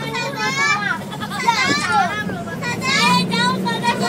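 High-pitched children's voices calling out and chattering inside a moving bus, over the steady drone of the bus engine.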